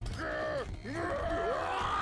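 An anime character's voice groaning and crying out with strain, the pitch sliding up and down in long curves, starting abruptly over a low steady rumble from the soundtrack.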